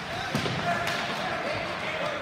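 Ice hockey play: two sharp clacks of stick and puck about half a second apart, with voices of players and spectators in the rink behind.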